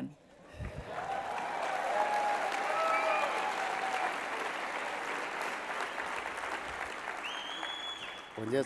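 Large audience applauding and cheering, breaking out about half a second in, with a few shouts among the clapping and a whistle near the end.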